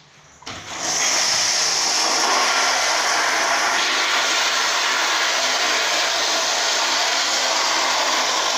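Eljer Signature commercial toilet flushing on its flush valve: the flush is pushed and about half a second in a sudden, loud, steady rush of water starts and keeps going.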